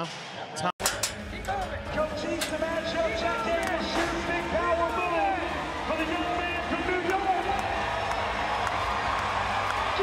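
Live arena sound during a bull ride: crowd noise and a distant, echoing voice over the arena loudspeakers with music underneath, and a few sharp knocks. A short dropout near the start marks an edit cut.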